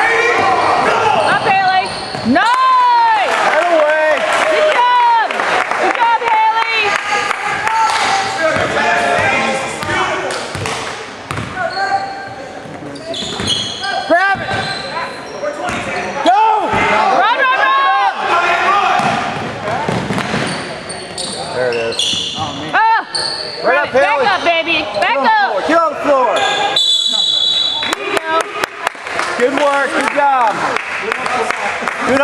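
Game sounds of a high school basketball game in a gym: sneakers squeaking on the hardwood floor, the ball bouncing, and spectators' voices, with a referee's whistle near the end.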